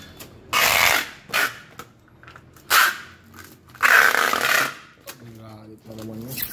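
Clear packing tape pulled off a handheld tape dispenser and pressed onto a cardboard box, in four pulls. The longest pull comes about four seconds in.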